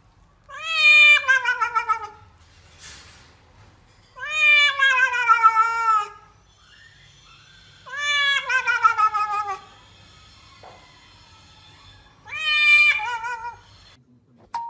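Domestic cat yowling: four long, drawn-out yowls a few seconds apart, each falling in pitch with a wavering quaver. It is the complaint of a cat being held and restrained for a bath.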